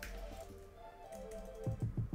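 Computer keyboard typing, a few faint keystrokes with a cluster near the end, over soft background music with held notes.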